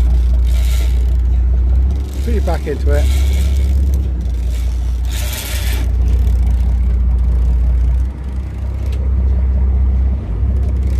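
Steady low rumble of the boat's engine running, with short hissing bursts and a brief rising call about two and a half seconds in.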